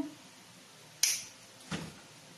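Two short handling sounds: a sharp, bright click about a second in, then a duller knock a little more than half a second later, from craft materials being handled at the work table.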